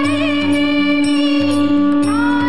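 Devotional Hindu mantra music: a chanted melody with vibrato over a loud, steady drone and a low, repeating beat.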